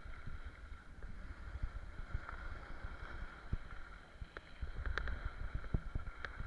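Skiing downhill: wind rushing over the microphone and skis running over hard snow, with irregular small knocks and clicks throughout.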